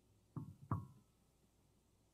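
Two quick knocks about a third of a second apart, each with a short ringing tone.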